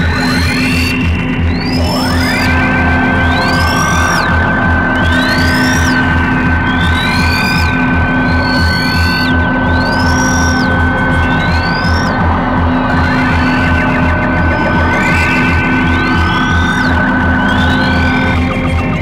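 Electronic music: a fast pulsing low drone under a long held high tone, with arching synthesizer sweeps that rise and fall about every second and a half.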